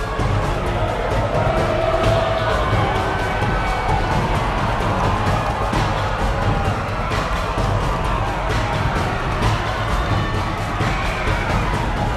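Background music with a heavy, steady bass beat.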